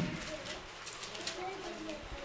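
Faint bird calls in the background, a series of low, short, wavering notes, during a pause in speech.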